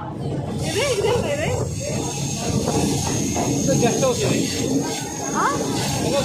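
Indistinct voices over the steady rushing noise of a moving local electric train, which swells about half a second in.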